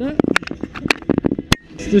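Handling of a stunt scooter and a body-worn camera: a string of sharp knocks and clicks, three of them louder than the rest.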